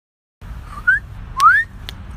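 A person whistling two short upward-sliding whistles about half a second apart, the second longer and louder, over a low rumble of wind or handling noise.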